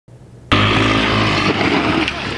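Motor scooter engine running loudly, starting abruptly about half a second in and holding a steady pitch.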